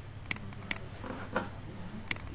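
Two sharp computer-mouse button clicks, a little under half a second apart, as a folder is opened with a double-click. A softer, duller knock comes about halfway through, over a steady low hum.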